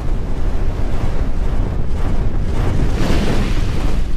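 Intro sound effect: a loud, rumbling rush of noise with deep low end, swelling brighter about three seconds in.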